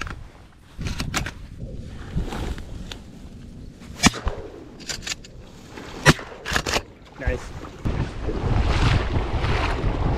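Two shotgun shots about two seconds apart, each a sharp crack, with smaller knocks and clicks of the gun being handled around them. Wind noise on the microphone rises near the end.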